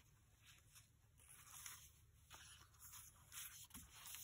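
Near silence, with faint rustling and soft scrapes of twine being wound and drawn around a paper button closure.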